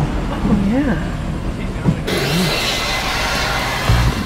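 Car running at low speed, heard from inside the cabin through an open window: a steady low engine and road drone, with indistinct voices early on and a rise in airy hiss about halfway through.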